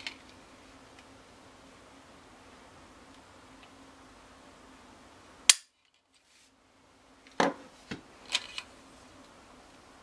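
Ruger 22/45 Lite pistol dry-fired with a trigger pull scale: one sharp metallic click about halfway through as the trigger breaks and the hammer falls on an empty chamber, at about three and a half pounds of pull. A few lighter clicks and knocks of handling follow near the end.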